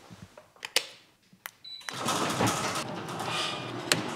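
Two sharp clicks of a wall-mounted switch, then a louder steady noise from about two seconds in.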